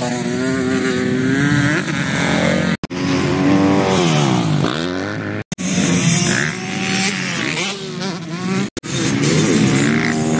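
Motocross dirt bike engines revving hard and falling away, the pitch climbing and dropping again and again as the bikes ride the track. The sound cuts out abruptly three times, at about three, five and a half and nine seconds.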